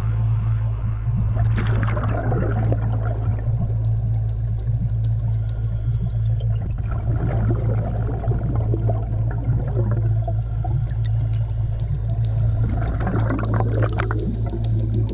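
Underwater sound picked up through a camera housing: a steady low hum, with bubbling bursts from scuba divers' regulator exhalations about a second and a half in and near the end. A faint high whistle rises and falls twice.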